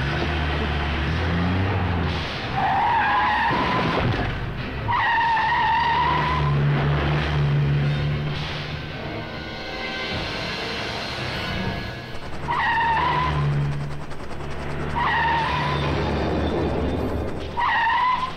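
Car engine running with tyres screeching about five times, each squeal a second or so long, mixed with background music.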